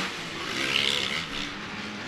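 Motocross bikes running on the track: a steady, mixed engine drone from several dirt bikes, with no single bike standing out.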